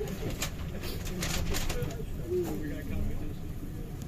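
Low rumble of a London double-decker bus heard from the upper deck, with indistinct voices and a few short clicks.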